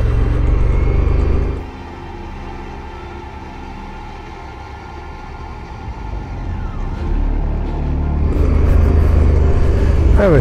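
Honda Africa Twin motorcycle riding along a gravel road: steady engine and wind noise. The sound drops to a quieter level about a second and a half in, then builds back up over the last few seconds.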